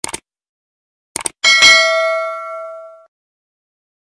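Subscribe-button animation sound effect: a quick mouse click, then a double click about a second in, followed by a bell ding that rings out and fades over about a second and a half.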